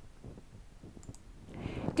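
Short quiet pause from a newsreader: faint room tone with a few small mouth clicks about a second in, then a soft intake of breath just before she speaks again.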